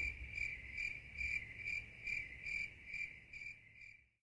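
A cricket chirping steadily, about two and a half short high chirps a second, fading away at the very end.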